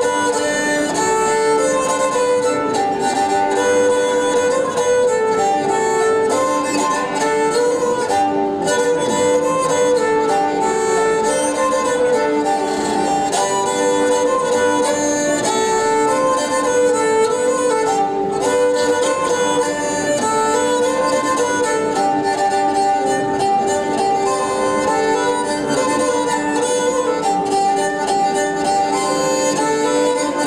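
Calabrian lira, a small pear-shaped folk fiddle held upright on the knee, bowed to play a running melody over a steady drone note.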